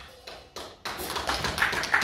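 The last piano note dies away, a few scattered claps sound, and audience applause fills in about a second in, growing louder.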